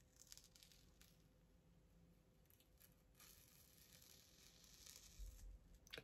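Faint, soft tearing of a dried peel-off blackhead mask being slowly pulled off the skin of the nose, in near silence. The sound comes briefly about half a second in, then again from about three seconds until near the end, when the mask comes free.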